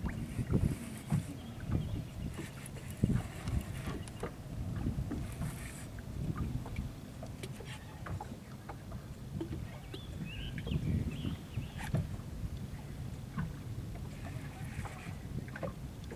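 Small waves lapping and slapping against the hull of a bass boat, an uneven series of soft knocks, with occasional small clicks.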